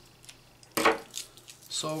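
One sharp metallic clack from small embroidery scissors about a second in, followed by a few fainter clicks as the stitched page is handled.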